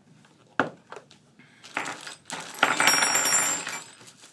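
Small metal parts clinking and rattling as they are handled: a couple of light knocks, then a louder jingling rattle with a metallic ring in the second half.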